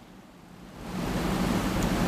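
A pause in speech: a soft, even hiss that swells up about half a second in and then holds steady.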